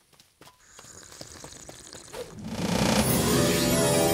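Cartoon magic-spell sound effect: after a near-quiet start with a few faint clicks and drips, a bright shimmering swell of layered tones rises about two and a half seconds in and stays loud.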